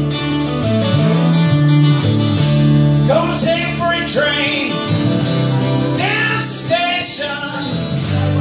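Two acoustic guitars played together live, strumming and picking chords, with a voice singing from about three seconds in.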